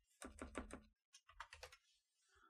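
Faint computer-keyboard typing: a quick run of about five keystrokes, then a few scattered ones in the second half.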